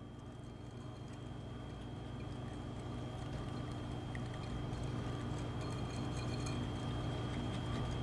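Wire whisk beating an egg into thick melted chocolate and butter batter in a ceramic bowl: a quick, steady patter of strokes that grows louder over a few seconds, over a steady low hum.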